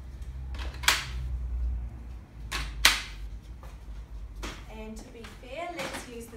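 Maxi-Cosi car seat adapters clicking into the frame of a Bugaboo Cameleon3 stroller: two sharp snaps about two seconds apart as each adapter locks in.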